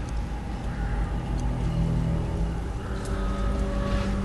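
Ambient intro of a depressive black metal track: a low steady rumble with faint held tones above it and occasional clicks, no band playing yet.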